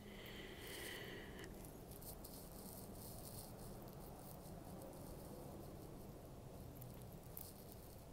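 Very faint rustling and tiny clinks of a fine metal chain being picked at and worked loose with the fingers, over low room tone.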